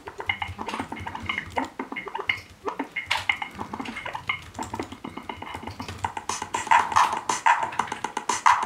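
TIDAL live-coded drum-sample loop (snare, bass drum, toms and clap) playing from the computer in a fast, busy repeating rhythm. The samples are pitch-shifted, partly reversed and vowel-filtered.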